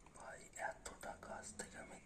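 A person whispering softly, close to the microphone.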